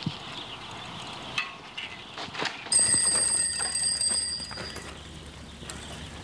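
A bicycle bell ringing for about two seconds, starting suddenly a little before the middle, after a few short knocks and clatters.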